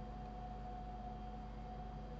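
Quiet, steady low hum with a faint constant whine above it, the background noise of the recording setup; nothing else happens.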